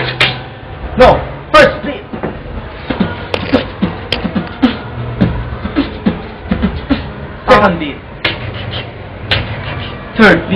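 Beatboxing: a fast, uneven run of mouth-made clicks and snare-like hits, broken by a few louder vocal swoops that fall in pitch, over a low hummed tone in stretches.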